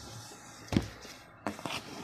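A taped cardboard box being handled and turned over on a tabletop: one sharp knock under a second in, then a few lighter knocks and rubs near the end.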